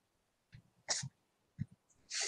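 A short breathy burst from a person about a second in, followed by a faint low knock, through video-call audio that drops to silence between sounds.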